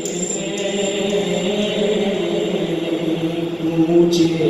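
A man's voice singing a naat into a microphone, holding long, slowly bending notes without instrumental accompaniment.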